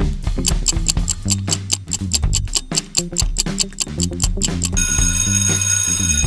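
Quiz countdown-timer sound effect: a clock ticking about four times a second over a looping bass line, then an alarm ringing near the end as time runs out.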